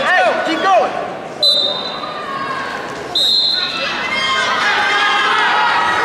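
Referee's whistle blown twice to start a wrestling bout: two short, steady, shrill blasts about two seconds apart, over crowd voices in a gym. In the first second there are rubber-soled shoes squeaking on the mat.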